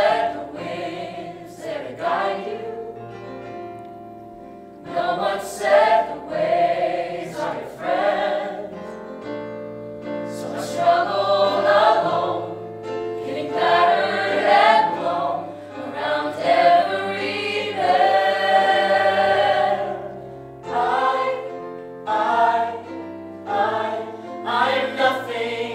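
Musical-theatre cast singing together as an ensemble, in phrases of held notes with a long sustained chord about three-quarters of the way through.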